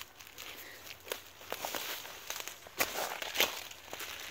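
Footsteps through dry fallen leaves and grass: irregular rustling and crackling steps.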